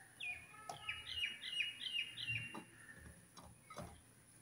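A bird calling a quick series of about five chirps, each falling in pitch, in the first half. A few light taps come as fruit pieces are set into a glass baking dish.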